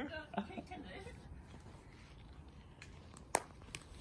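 A single sharp clack about three seconds in, from a wooden croquet mallet striking a ball, followed shortly after by a fainter knock, against quiet outdoor background.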